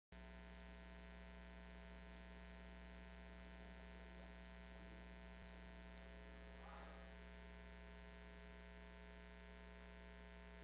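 Faint steady electrical mains hum with many overtones, the kind of hum a ground loop or audio equipment leaves on a recording.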